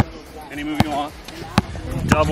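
A basketball dribbled on a hard outdoor court: three bounces a little under a second apart.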